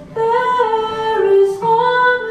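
A woman singing a folk song in long held notes over acoustic guitar, with a short breath and a new phrase starting near the end.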